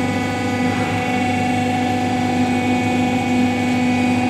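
Steady machine hum made of several unchanging tones, from the running wheel hydraulic testing machine and its control panel.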